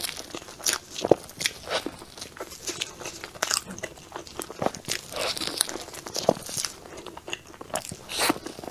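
Close-miked eating sounds: biting into a soft, cream-filled matcha cake and chewing it, with many irregular mouth clicks and smacks.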